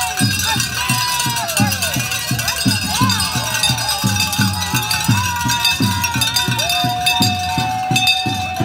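Handbells ringing over a steady low beat about three times a second, with voices calling out among the marchers.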